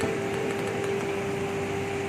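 A machine running with a steady hum, a single held mid-pitched tone over a constant hiss.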